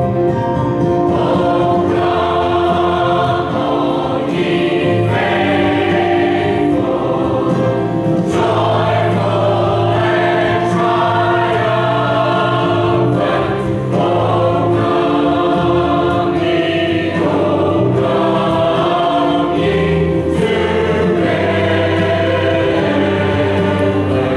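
Mixed choir of men's and women's voices singing together, continuously and at a steady volume, with the sustained notes changing every second or so.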